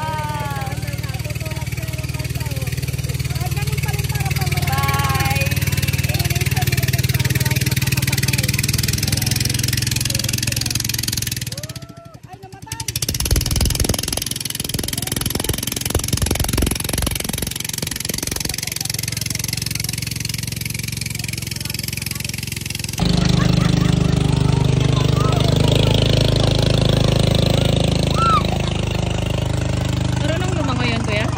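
Small engine of a wooden motor bangka running as it tows a long bamboo raft, with people's shouts and calls over it. The engine sounds closest in the middle stretch, and the sound changes abruptly twice.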